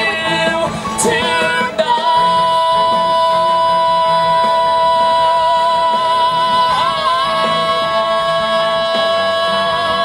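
A man and a woman singing a musical-theatre duet live through handheld microphones and a PA. About two seconds in they settle into one long held note with vibrato, shifting pitch briefly around seven seconds, and let it go near the end.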